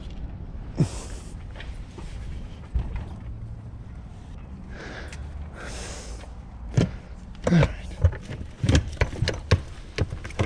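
Mountain bike being lifted into the back of a car: scattered knocks early, then a cluster of loud, sharp knocks and clunks in the last few seconds as the bike's frame and fork bump against the car's cargo floor and fork mount.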